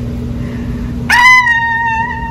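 A woman's high-pitched falsetto vocal note, starting about a second in with a short upward scoop and then held steady.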